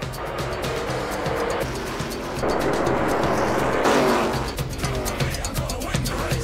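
A pack of NASCAR K&N Pro Series stock cars racing past at speed. Their engine noise builds to a peak about four seconds in, then falls in pitch as the cars go by. Background music with a steady beat runs underneath.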